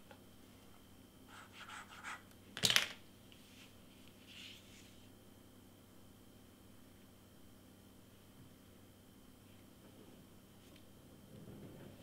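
Quiet handling of cardstock and a plastic glue bottle on a cutting mat: a few light taps, then one sharp knock a little under three seconds in as the glue bottle is set down, and a brief rustle of paper. After that only a faint steady room hum.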